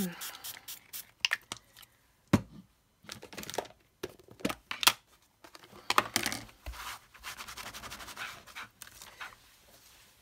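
A plastic craft stencil being cleaned with water: scattered clicks, taps and plastic crinkling as a spray bottle, a plastic tub and a cloth are handled. The two sharpest knocks come about two and a half and five seconds in.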